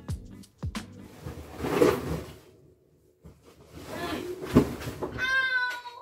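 A scuba diving weight belt handled and dropped, ending in a heavy thud, followed near the end by a short high-pitched yelp of pain as it lands on a toe.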